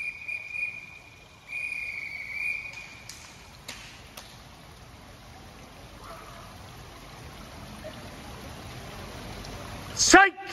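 A whistle blown in two steady, high blasts, the second a little longer: the referee's signal calling the swimmers up onto the starting blocks. After it come a few faint clicks and the low steady background of the pool hall.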